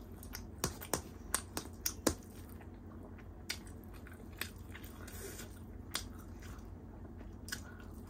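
Close-up eating sounds: a mouthful of chicken and biryani rice being chewed, with many short sharp wet clicks and smacks of the mouth. The clicks come quickly in the first two seconds, then only now and then.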